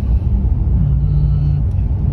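Steady low rumble of a car's engine and tyres heard from inside the cabin while driving slowly along a city street.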